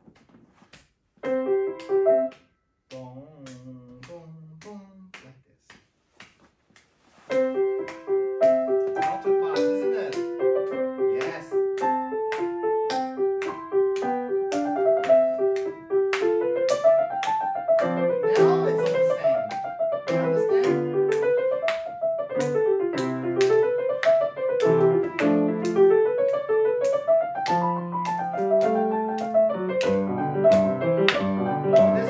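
Grand piano playing the opening of a classical piece: a short loud chord about a second in, a few soft notes, then from about seven seconds in a steady passage that turns into running scales up and down. Sharp clicks keep a steady beat throughout.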